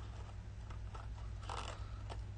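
Faint handling of a small cardstock label over a paper box: light rustles and taps, with a brief louder rustle about one and a half seconds in, over a steady low hum.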